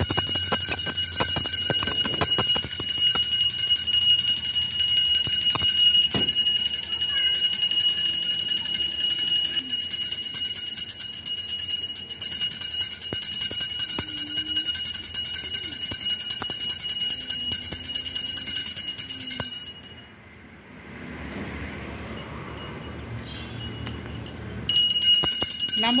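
A puja hand bell rung continuously with rapid strokes, giving a steady high ringing. It stops suddenly about twenty seconds in and starts again near the end.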